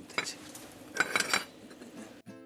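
Bent steel rod clinking and tapping against a concrete floor as it is set down and shifted into place, a few light metallic clinks, most of them about a second in.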